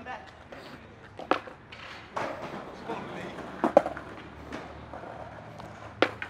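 Sparse light knocks and scuffs of a skateboard and footsteps on concrete steps. The two clearest knocks come a little after a second in and near four seconds.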